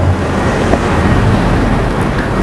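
Audio from the DJ software played through the Vestax VCI-380's pad effects: a steady, dense rumble with a low hum and no clear beat, the sound of the sample under an effect while the effect type is being changed.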